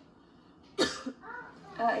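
A person coughing once, sharply, about a second in, followed by a short, weaker trailing sound.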